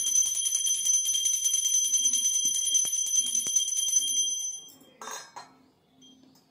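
Pooja hand bell rung rapidly and without a break, a bright high ringing that dies away a little after four seconds in. A short clatter follows about a second later.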